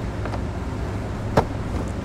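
Plastic dashboard side trim panel being pried off, with one sharp click about a second and a half in as its clips pop free, over a steady low background hum.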